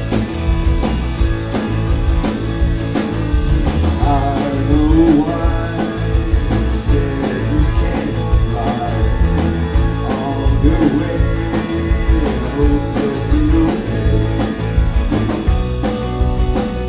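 Live rock band playing with electric guitars, bass and drums in a steady driving rhythm. A man's singing comes in about four seconds in.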